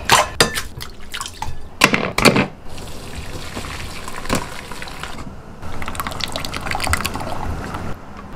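Hot vegetable stock poured from a stainless steel pan through a metal mesh strainer into a bowl, splashing steadily, louder in the second half. A few sharp knocks and clinks come earlier.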